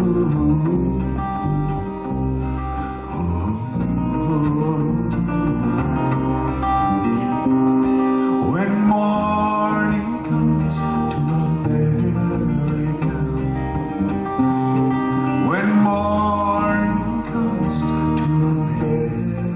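Live acoustic folk music: acoustic guitars playing steady sustained chords, with some singing, and two rising slides about halfway through and near the end.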